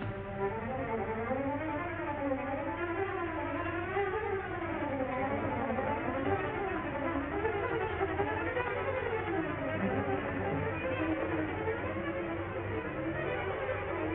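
Orchestral film score with strings playing quick runs that climb and fall over and over, with a dull, narrow old-soundtrack tone.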